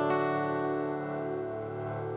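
A strummed acoustic guitar chord ringing out and slowly fading, with no new strum: the held closing chord of a worship song.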